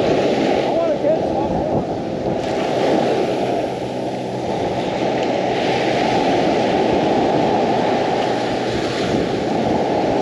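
Surf breaking and washing up the beach, a steady rush that swells as waves come in, a few seconds in and again around the middle, with wind on the microphone.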